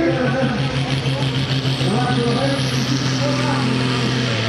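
Red International Harvester pulling tractor's diesel engine under full load as it pulls the sled down the track, running at a steady high pitch while its stack blows black smoke. A faint high whine rises in pitch midway, and the engine note drops slightly near the end.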